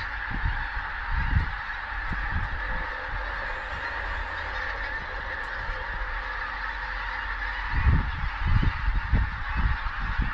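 A large flock of pink-footed geese calling in flight, many birds honking at once in a dense, continuous chorus. A few low rumbles come through about a second in and again near the end.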